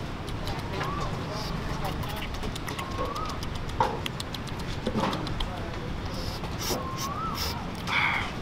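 Open-air street-food market ambience: a low bed of noise, clinks and knocks of utensils and dishes, the loudest a sharp knock just before the middle. A short call that rises and then levels off recurs every two to three seconds.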